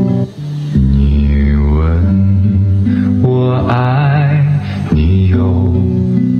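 A song played through a Bose SoundLink Flex (2nd gen) portable Bluetooth speaker as a listening demo: a sung melody with vibrato over steady bass notes.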